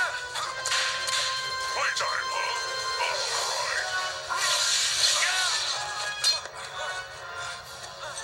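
Action-show fight soundtrack heard thin through a television speaker: background music with whooshing strike and impact effects and short shouts. A loud, noisy crash of effects comes around three to five seconds in.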